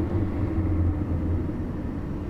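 Steady low hum of a car's engine and road noise heard from inside the cabin while driving, with a faint steady tone above it.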